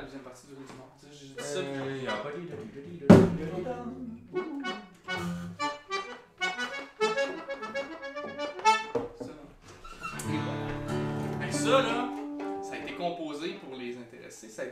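Diatonic button accordion playing short, broken phrases and held chords with pauses between them, as if trying out a tune. A single sharp thunk about three seconds in is the loudest sound.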